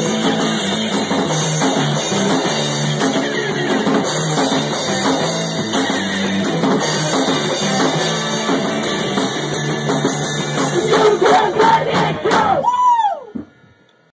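Rock band playing live, with drum kit and electric guitars, in a loud instrumental ending to the song. It grows loudest about eleven to twelve seconds in, then a sliding pitch glides up and down and the sound drops away suddenly just before the end.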